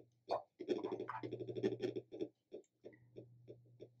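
Faint rhythmic scrubbing of a watercolour brush mixing paint in a palette well, about three strokes a second, busier for a second and a half near the start.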